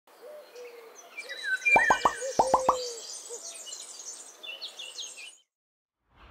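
Sound effects for an animated nature title: bird chirps and hoot-like whistles, with a quick run of five rising cartoon pops about two seconds in. The sound cuts off abruptly shortly before the end.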